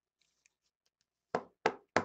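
Three quick, sharp knocks on a tabletop, about a third of a second apart, starting a little past halfway, from trading cards being tapped and set down on the table. A few faint ticks of card handling come before them.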